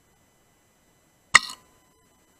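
A single shot from a pre-charged pneumatic air rifle: one sharp crack a little over a second in, dying away within about a quarter of a second.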